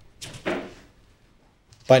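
A brief soft rustle of paper handled on the desk, about half a second long, followed by a quiet pause before the voice resumes.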